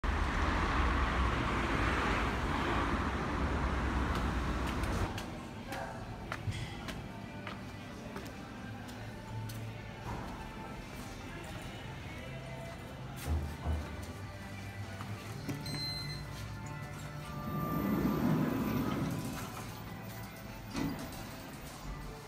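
Wind rumbling on the microphone for about the first five seconds, then quieter indoor sound with scattered footsteps and clicks, and faint music.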